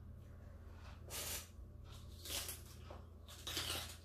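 Crispy deep-fried pork skin crunching as it is broken and chewed close to the microphone, in three short bursts about a second apart.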